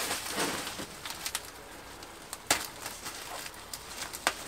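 Plastic bubble wrap rustling and crinkling as it is pulled off a foam model-aircraft part, with a few sharp crackles, the loudest about two and a half seconds in.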